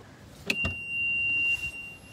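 Golf cart warning beeper: a click about half a second in, then one steady high beep for nearly two seconds, which stops just before a second click.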